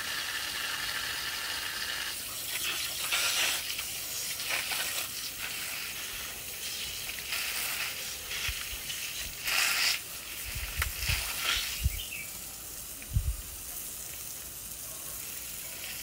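Water running from a garden hose: a steady hiss with splashing as wild boar intestines are flushed clean, swelling now and then. A few dull thumps come in the second half.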